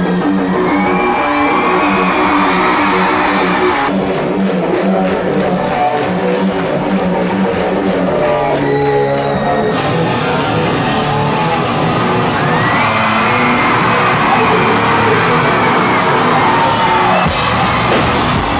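Rock band playing live: electric guitars over a drum kit.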